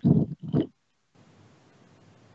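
Two short, muffled thumps in quick succession right at the start, from a hand bumping a laptop close to its built-in microphone; the sound then cuts out completely for a moment before the faint background hiss returns.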